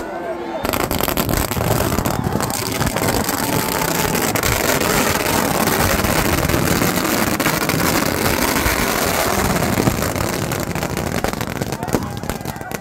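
Ground-level fireworks going off close by: a dense run of rapid crackling pops over a hiss, starting about a second in and thinning near the end, with crowd voices beneath.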